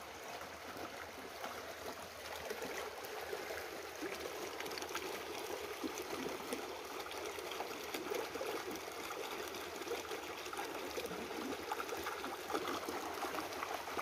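Shallow rocky creek trickling and gurgling over stones: a steady wash of running water.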